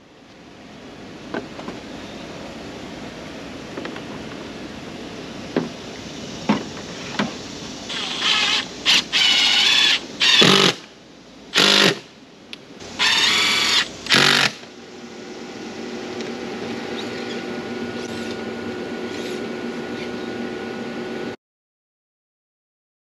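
Cordless drill-driver run in about six short bursts, its motor whining up and down as it drives screws into a mounting board on the siding. A softer steady hum follows, and the sound cuts off abruptly near the end.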